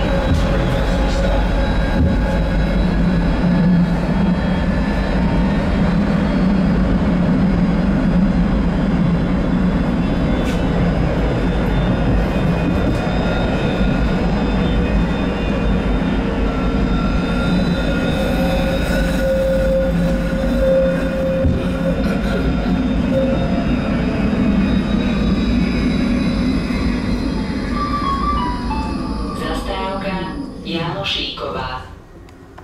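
Electric tram heard from inside the passenger saloon while running: a steady rumble from the wheels on the rails, with a thin electric whine over it. Near the end the whine falls in pitch and the rumble fades as the tram slows down.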